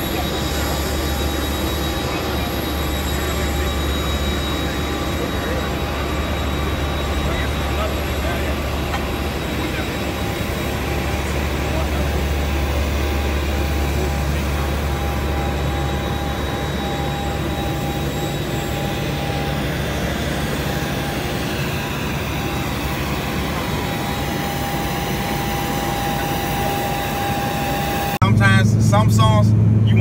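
Jet aircraft running on an airport apron: a steady rumble with a fixed high whine that does not change pitch. About two seconds before the end it cuts sharply to a louder, lower hum, the sound inside an aircraft cabin, with voices.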